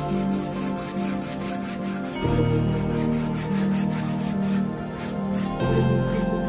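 Flat paintbrush rubbing back and forth across a stretched cotton canvas in repeated scratchy strokes, spreading acrylic paint. Background music plays along.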